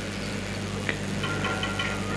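A steady low hum over faint background noise, with a small click about a second in.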